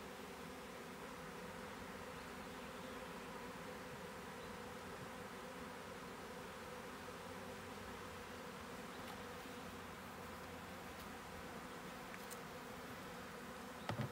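Steady buzzing hum of a honeybee swarm as it is being hived, with many bees flying around the hive box. A brief knock near the end.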